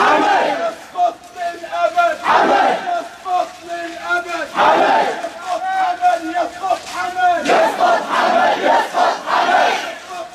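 Crowd of marching protesters chanting a slogan together in call-and-response: a sung lead line answered by louder group shouts every two to three seconds, the last one longer.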